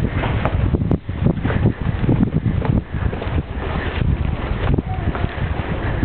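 Footsteps on stone paving, irregular, under a low rumble of wind and handling noise on the microphone while walking.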